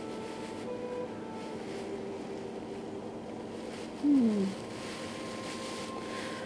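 Quiet room tone with a faint steady hum. About four seconds in, a person's voice gives one short hum that falls in pitch.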